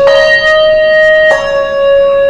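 Two handbells rung alternately on consecutive notes, a slightly higher one at the start and a lower one just over a second later. Each bell is damped against the ringer's body as the other is struck, so one note stops cleanly as the next begins, giving a legato line.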